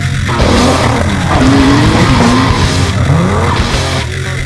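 Rock music with a drifting car's sound mixed in: the engine's pitch wavers up and down with tyre squeal through the middle, and the pitch rises again near the end.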